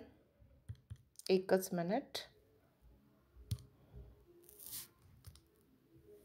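A woman's voice says a single word, then a quiet small room with a few faint clicks and a brief soft hiss.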